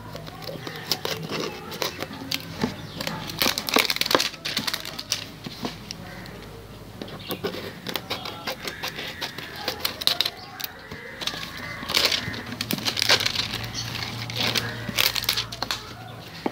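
Scissors snipping and the plastic label sleeve of a liquid detergent bottle crinkling and crackling as it is cut and stripped off, in irregular clicks and rustles.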